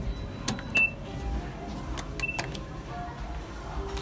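Two short, high beeps about a second and a half apart as the buttons on a Hitachi elevator's car panel are pressed, each with a click, over background music.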